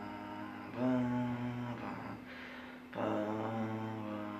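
Slow, low music of long held droning notes over a constant hum. A new deep note comes in about a second in and another near three seconds, each held steady and slowly fading.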